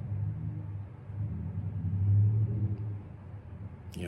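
A low, steady rumbling hum that swells and fades, loudest about two seconds in.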